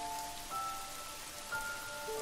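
Steady rain falling, with soft held musical notes over it; a new note enters about half a second in and another about a second and a half in.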